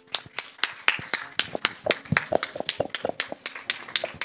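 Audience applauding: a quick, irregular patter of many handclaps that starts abruptly.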